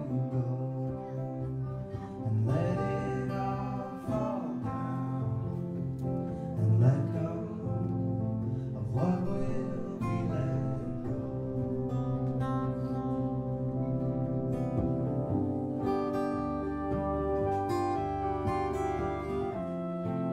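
Live music: a Fender acoustic guitar strummed steadily under a man's singing voice, whose drawn-out notes bend up and down several times.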